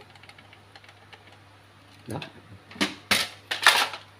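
Hard plastic clicking and clattering as an HP LaserJet P1006 printer's plastic top cover is handled, with a few loud knocks in the last second or so.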